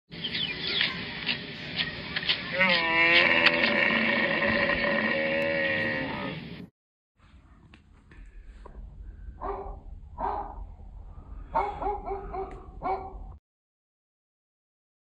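Bus sound effect: engine noise with clicks and a pitched tone that rises and then holds, cutting off about two-thirds of the way through. After a short gap, a puppy gives about six short yips and whines.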